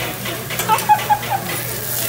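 Food sizzling on a teppanyaki griddle, with a quick run of sharp metal clinks from the chef's spatula about half a second to a second and a half in.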